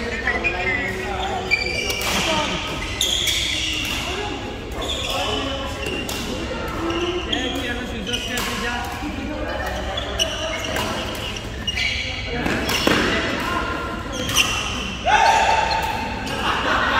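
Badminton rally: sharp racket hits on the shuttlecock and shoes squeaking on the wooden court floor, echoing in a large sports hall, with background voices.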